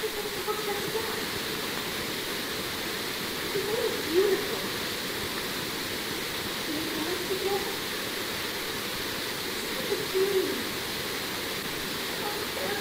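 Steady hiss of an old live theatre recording, with faint, distant stage voices breaking through a few times, most clearly about four and ten seconds in.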